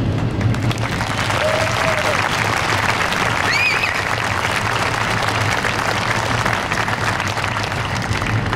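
Audience applauding steadily, a dense spread of hand claps, with a couple of short voice calls rising above it partway through.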